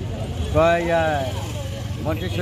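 A man's voice, one drawn-out spoken phrase about half a second in, over a steady low rumble of road traffic.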